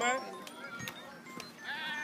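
A person on the sideline gives a long, high-pitched drawn-out yell that starts near the end, just after a short shouted word.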